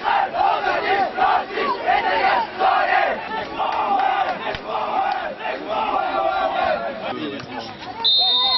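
Young footballers shouting together in a team huddle, a pre-match rallying cry of many overlapping voices in repeated bursts.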